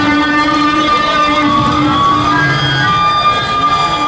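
Live electric guitar solo over the band, holding long sustained notes through an amplifier.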